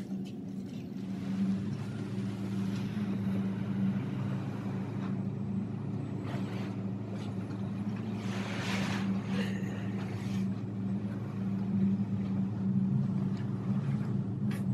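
Crinkling of a deflated vinyl pool float being handled and spread over a bed, loudest about eight to nine seconds in, over a steady low hum.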